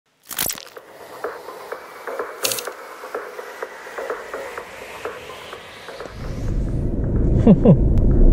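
Edited intro sound effects: two whooshes and an even ticking of about three to four clicks a second under a rising hiss. From about six seconds in, a Proton Iriz's engine is heard inside the cabin, rumbling and growing steadily louder as the car accelerates, with a short grunt from the driver near the end.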